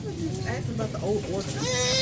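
Indistinct talking in soft voices, ending in one drawn-out, wavering vocal sound near the end.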